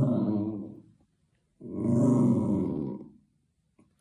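A long-haired tabby cat growling low in two drawn-out growls with a short silent gap between them, guarding the ball it holds under its paw.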